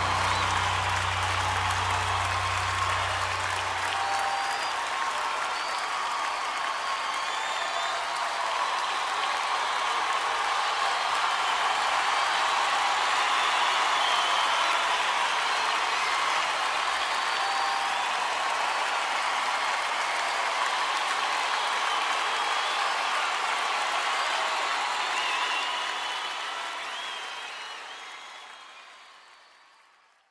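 Audience applause with scattered cheers at the end of a live song. A low held note from the band dies away about four seconds in. The applause fades out over the last few seconds.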